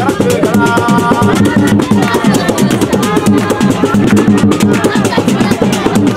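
Live Somali Bantu group music: drums and rattles keep a quick, steady beat, with hand-clapping and voices singing over it.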